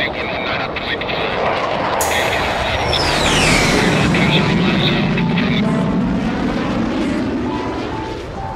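Recorded jet airplane passing, part of a soundtrack that opens with air-traffic-control radio: the engine noise jumps up about two seconds in, with a high whine that falls in pitch, swells and then fades near the end.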